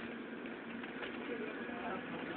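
Steady road noise heard inside a moving car, with a faint wavering voice-like sound about a second in.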